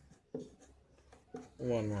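Faint writing strokes of a pen or marker, with a voice saying "one" near the end.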